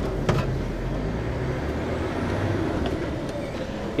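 Heavy goods vehicle's diesel engine pulling away under load onto a roundabout, heard from inside the cab as a steady low rumble, with one sharp click about a third of a second in.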